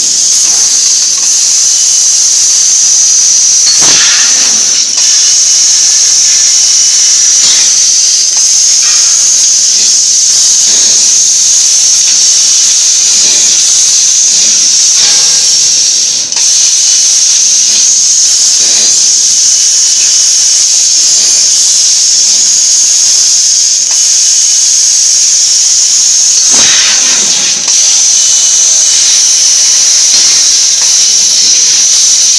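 Fiber laser tube cutting machine cutting square tube: a loud, steady high hiss that dips briefly twice.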